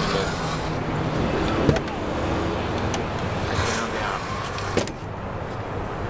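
Aluminum trailer entry door being worked by hand: two sharp latch clicks, one about a second and a half in and one near the end, with short rasping sweeps of the door moving between them.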